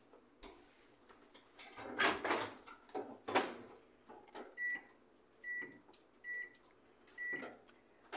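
Two knocks from the microwave oven's door being worked, then four short, identical beeps about a second apart from its keypad as an eight-minute cooking time is keyed in.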